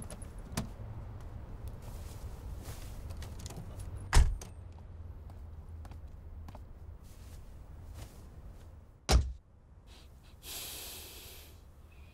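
Car doors shut twice with heavy thuds about five seconds apart, over a steady low outdoor rumble. After the second thud the sound drops to the quieter cabin of the car, with a brief hiss near the end.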